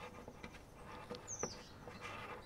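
Faint small clicks of a spear gun's shooting line being handled and threaded through a shark-deterrent float, with a single short, high bird chirp falling in pitch a little past halfway.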